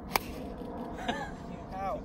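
A golf iron striking the ball once, a single sharp crack just after the start, followed by short voiced exclamations from onlookers.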